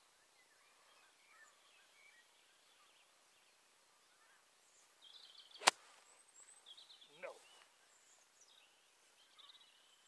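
A single sharp click of a golf wedge striking the ball a little after halfway, over faint chirping birdsong. About a second and a half later comes a short falling sound.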